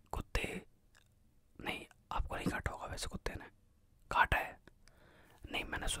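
A man's soft whispered speech in short phrases with pauses between them.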